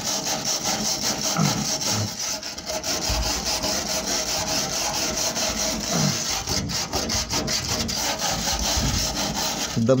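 A hand tool scraping rust and loose, flaking paint off the galvanised steel inside a Fiat Ducato's sill, in quick repeated strokes.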